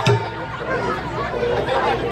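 Voices talking over the chatter of an audience, with a single sharp thump right at the start.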